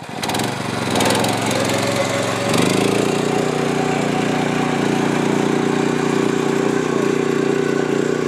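Power tiller engine running under load as the machine pulls through flooded paddy mud. It settles into a steady hum about two and a half seconds in.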